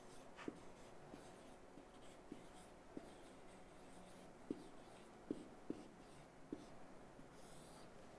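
Faint sound of a marker pen writing on a whiteboard: the tip scratches and squeaks through the strokes, with a handful of light ticks as it touches down on the board.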